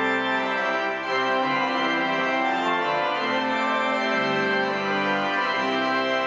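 Church organ playing slow, sustained chords, the bass notes moving every second or so.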